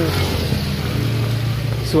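Motor traffic on a wet street: engines running with a steady low hum as a motorcycle passes close by.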